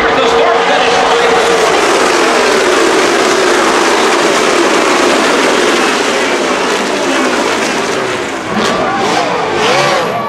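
A pack of NASCAR Cup race cars' V8 engines running at speed past the grandstand, a loud dense engine roar whose pitch falls slowly as the cars pass and pull away. Crowd voices come in near the end.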